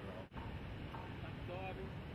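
Faint voices in short fragments over a steady background hiss, with a brief dropout about a third of a second in.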